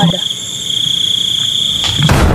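Crickets trilling steadily: a continuous high, pulsing chirr. A sudden loud hit comes in right at the end.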